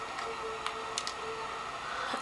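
A few faint, sharp clicks over a low, steady hum.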